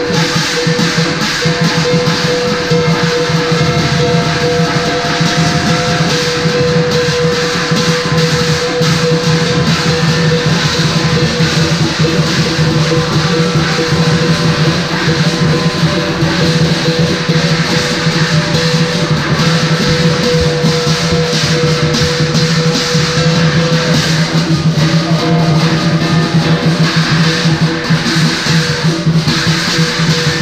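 Chinese lion dance percussion playing without a break: a drum beating under dense clashing cymbals and a steady gong ring.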